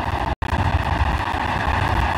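Audience applauding: steady, dense clapping that cuts out completely for an instant about half a second in.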